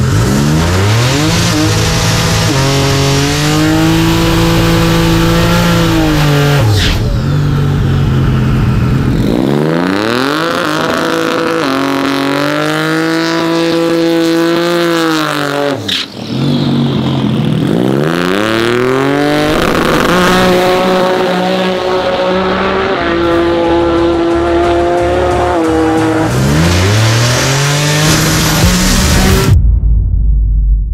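Turbocharged Subaru EG33 flat-six in a drag car revving up and holding steady high revs, then dropping back, four times over, with tyres spinning in a burnout. The sound cuts off suddenly near the end.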